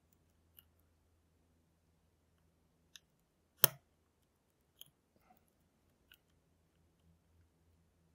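A steel lock pick working the pins of a tensioned pin-tumbler lock cylinder: a handful of small, scattered metallic clicks, with one much louder, sharp click about three and a half seconds in.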